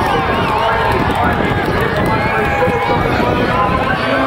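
Crowd chatter: many voices talking at once, steady throughout.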